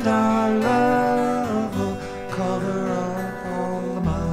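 Two acoustic guitars playing a folk accompaniment, with a long sung note over them that slides down and fades about a second and a half in.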